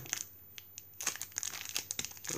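Plastic parts bag crinkling in the hands as it is opened, starting about a second in as a run of irregular small crackles and clicks.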